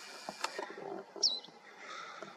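A bird gives a single short chirp that drops in pitch, a little past halfway, over a faint outdoor background; a sharp click comes about half a second in.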